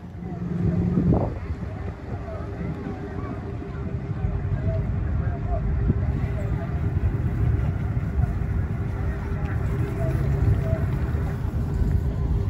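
Boat engine running with a steady drone and hum as a sightseeing boat moves off through the harbour. Wind buffets the microphone, and there are faint distant voices.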